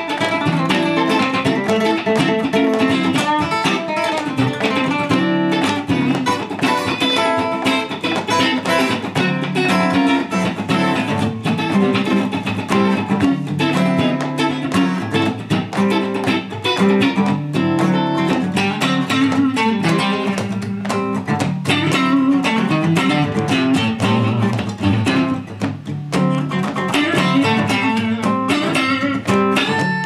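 A steel-string acoustic guitar and a Fender electric guitar played together, with picked chords and single-note lines running without a break.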